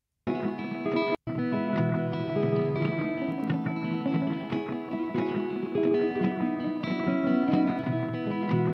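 Recorded guitar riff played over chords through a delay effect, with notes ringing on and overlapping; the sound cuts out briefly about a second in. The delay is judged to be throwing off the player's rhythm.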